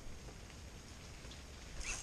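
Faint steady hiss of rain on an ice-fishing hut. Near the end a louder, higher whirring hiss starts as the spinning reel is worked when a fish strikes.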